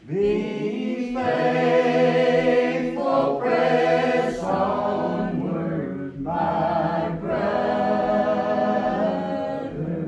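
A church congregation singing a slow hymn together without instruments, many voices holding long drawn-out notes. A new line begins at the very start, with brief breaks between phrases.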